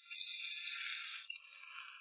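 Garlic-topped oysters sizzling in their shells on a charcoal grill, a crackly hiss with one sharp pop a little over a second in.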